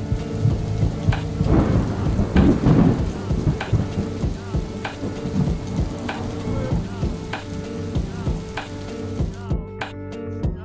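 A rain-and-thunder sound effect: a steady hiss of rain with a rumble of thunder swelling about two seconds in, laid over slow music with sustained notes and a regular beat. The rain cuts off just before the end.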